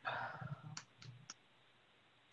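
A brief soft rustle, then three sharp clicks about a quarter second apart, as of someone working at a computer, heard faintly over a video-call microphone.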